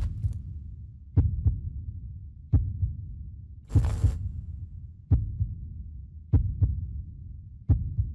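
Heartbeat sound effect: deep thumps about every 1.3 seconds, some in close pairs, over a steady low hum, with a short hiss about four seconds in.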